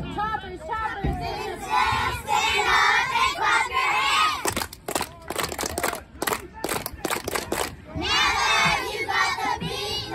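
Young girls of a cheerleading squad shouting a cheer together, with a quick run of sharp hand claps in the middle before the shouted chant resumes.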